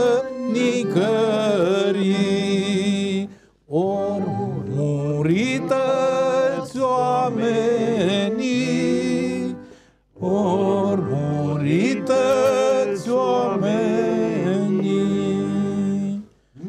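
A Weltmeister piano accordion playing held chords while a man sings a sad song over them. The music breaks off briefly twice, about three and a half seconds and ten seconds in.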